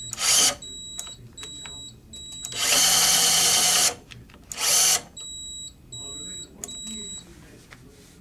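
A Kolver Pluto 10 electric screwdriver runs in short bursts against a hard-joint rundown kit: a brief run, then a longer run of about a second and a half, then another brief run. The tool will not complete the tightening on the hard joint.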